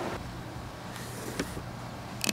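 Low steady background hum with a faint click about one and a half seconds in.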